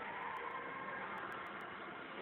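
Steady ambient hiss and background noise with no distinct event.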